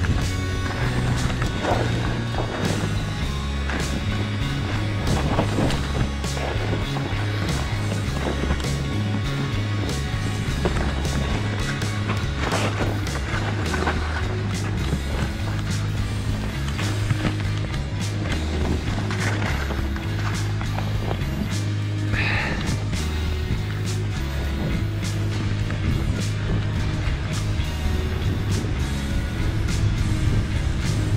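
Background music with a steady beat and a stepping bass line, over the scrape and hiss of skis carving on snow.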